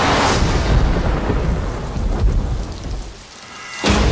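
Deep thunder-like rumble under a rush of rain-like noise, loudest at the start. It fades away about three seconds in, then comes back suddenly with a loud hit just before the end.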